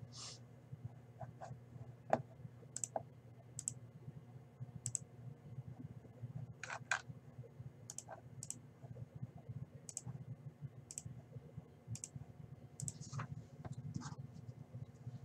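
Faint, irregular clicks of a computer mouse and keyboard, roughly one every half second to a second, over a steady low hum.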